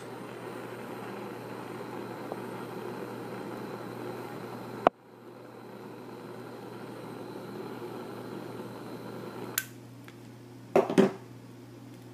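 Butane jet torch burning with a steady hiss as it melts the end of nylon paracord. A sharp click about five seconds in briefly cuts the hiss, which returns within a second; another click near ten seconds and the hiss drops away.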